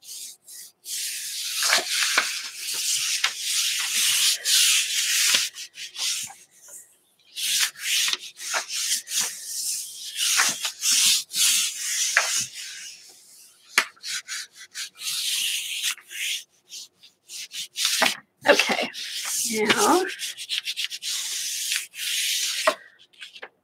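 Bare hands rubbing and pressing a large sheet of paper down onto a gel printing plate to lift the paint print, a dry hissing rub in long stretches of several seconds with short pauses between.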